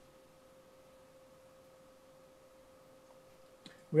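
Near silence with a faint, steady electronic tone at one pitch plus a fainter higher one, which cuts off near the end.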